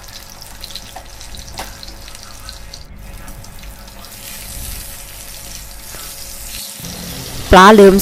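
Sun-dried snakehead fish frying in hot oil in a pan over medium heat, a steady sizzle. About halfway through, a wooden spatula turns the fish and the sizzle grows brighter.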